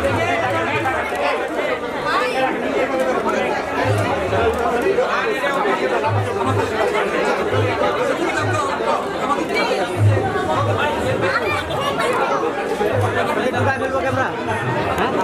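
Crowd chatter: many people talking at once, close by and overlapping, with no single voice standing out.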